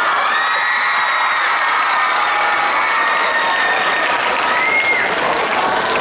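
Audience applauding and cheering, with long high-pitched shouts over the clapping.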